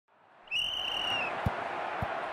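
A whistle is blown once in a single steady blast that falls slightly at its tail, over a steady crowd-like hiss. It is followed by a thud of a ball bouncing about a second later.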